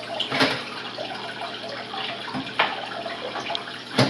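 Water splashing and trickling steadily from an aquarium filter, with a couple of brief louder splashes.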